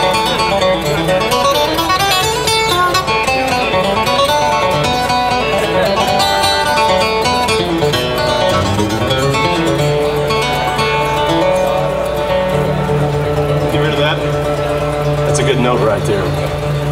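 Solo steel-string acoustic guitar playing an instrumental break in the key of D, with quick runs of single picked notes. A low bass note rings on under the melody through the last few seconds.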